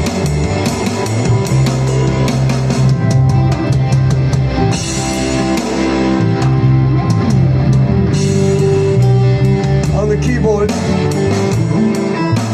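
Live rock band playing an instrumental vamp: a drum kit heard close, with cymbal and drum strikes, over a repeating electric bass line.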